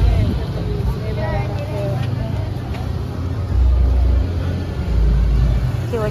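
Low rumble of a motor vehicle running nearby in street traffic, with indistinct voices in the background.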